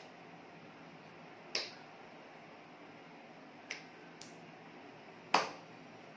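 Sharp hand contacts from sign language, as the hands strike together or against the body: four quick slaps, the faintest about two thirds in and the loudest near the end, over a low steady hiss.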